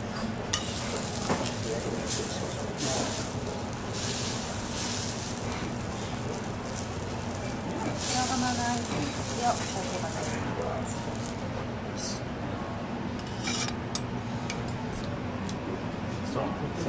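Food sizzling on a hot cooking surface, swelling in two long spells of hiss, with a few clinks of dishes over a steady low hum.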